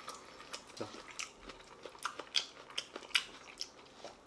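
A person chewing a mouthful of tender slow-roasted pork shoulder close to the microphone: faint, irregular small clicks.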